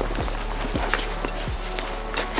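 Light knocks and rustling as a backpack's yoke adjuster, a stiff structural piece of the harness, is pulled out from behind its back-panel flap, with soft background music underneath.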